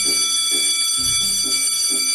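A loud, steady electronic beep: one high tone held unbroken, over soft background music.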